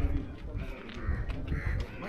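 Crows cawing, a string of short calls repeating every half second or so.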